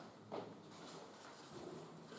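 Marker pen writing on flip chart paper: faint, scratchy strokes in a quick run through the second half.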